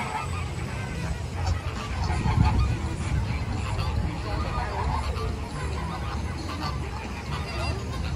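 A large flock of flamingos honking and calling in a continuous goose-like chorus, with a low rumble swelling about two seconds in.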